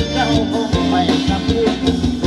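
Thai ramwong dance music played by a live band, with a steady drum beat of about two beats a second under a melody.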